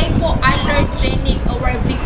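A woman speaking, with a steady low rumble underneath.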